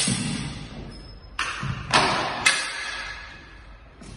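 Four sharp metallic strikes of steel sideswords and bucklers clashing in an exchange, each ringing out and echoing in a large hall; the third and fourth are the loudest.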